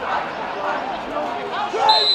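Footballers shouting to each other on the pitch, with a short, high referee's whistle blast near the end.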